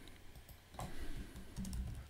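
Typing on a computer keyboard: a short run of keystrokes starting just under a second in.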